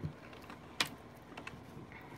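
A few light, sharp taps or clicks, the loudest a little under a second in, with fainter ones about a second and a half in: someone typing or tapping on a device.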